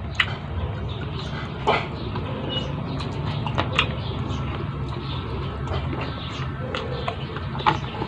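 Chewing and lip-smacking while eating pork ribs: a handful of short, wet clicks at irregular moments over a steady low hum.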